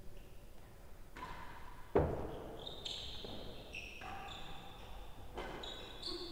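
A real tennis ball struck hard by a racket: one loud crack about two seconds in, ringing in the enclosed court, followed by a few faint high squeaks.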